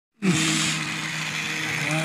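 Small electric motor of a battery-powered toy train running with a steady hum as the train drives along its plastic track.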